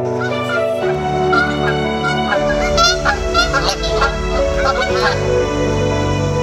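A flock of geese honking, many short calls overlapping, over steady background music.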